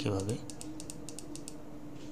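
A quick run of about ten light clicks from computer keys within about a second, as the on-screen pen marks are cleared.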